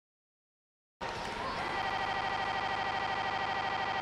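A loud electronic buzzer-like tone with a fast, even pulsing, starting suddenly about a second in after a brief unsettled onset and holding steady.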